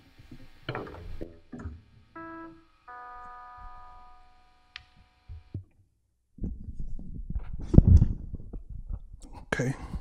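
Electric guitar playing its last notes and a held chord that cuts off about five and a half seconds in. After a short gap comes a run of low thumps and knocks of gear being handled, with one heavy thump about eight seconds in.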